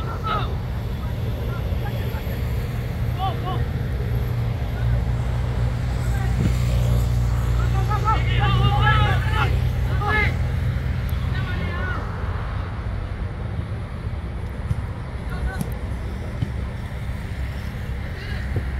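Football players shouting calls to each other across the pitch, loudest about halfway through, over a steady low rumble.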